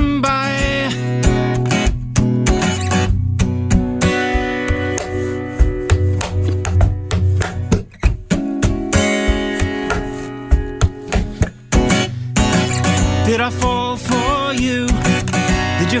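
Live acoustic folk song: a woman singing over strummed acoustic guitar with banjo and mandolin. Her voice drops out for an instrumental passage in the middle, broken by two brief stops, and comes back about twelve seconds in.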